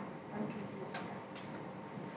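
A few faint clicks, about half a second to a second apart, over a low steady room hum.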